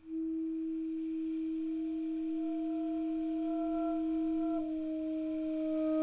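Solo basset horn holding one long, soft, almost pure note that starts out of silence, with a slight shift in the note about four and a half seconds in.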